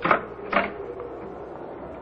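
Radio-drama sound effect of a door being opened: two short clicks or knocks about half a second apart, over a steady low hum.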